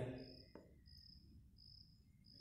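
Near silence with a faint insect chirping: short high chirps repeating evenly, about one every two-thirds of a second.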